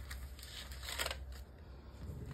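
Paper cupcake liners rustling softly as they are handled, in a few brief scratchy brushes near the start and about a second in, over a steady low hum.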